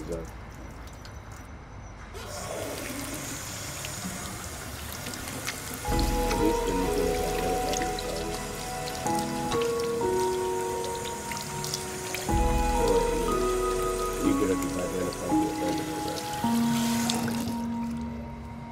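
Film soundtrack: a steady hiss, then from about six seconds in a score of sustained, layered notes that change step by step over a deep bass swell, with a second swell about twelve seconds in.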